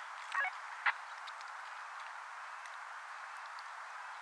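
Steady outdoor hiss, with two short, sharp sounds within the first second.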